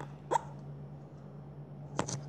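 A pause in a boy's speech: one short breathy vocal sound, like a small hiccup or catch of breath, about a third of a second in, over a steady low hum.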